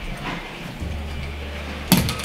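A single sharp knock near the end, over a faint low steady hum.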